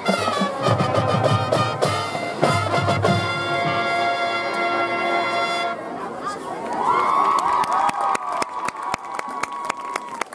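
Marching band with brass and drums playing, ending on a long held brass chord that cuts off about six seconds in. The crowd in the stands then cheers and claps.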